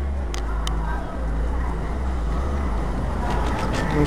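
A steady low rumble from a hand-held camera being moved along the shelves. Two sharp clicks come about half a second in, and a run of light ticks follows near the end.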